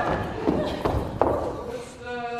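A few sharp knocks of dancers' shoes striking a wooden stage floor, three in little more than a second, as a couple spins through a dance.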